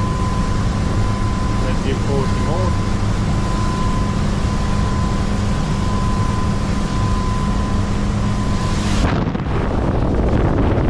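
Twin Volvo Penta D4 diesel engines running steadily under way, heard from the helm with a steady high tone over the engine drone. About nine seconds in the sound changes abruptly to wind buffeting the microphone and rushing wake water.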